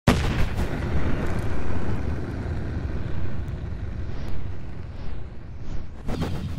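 Cinematic boom sound effect: a sudden blast like a gunshot or cannon shot, then a long low rumble that slowly fades, with a rising whoosh near the end.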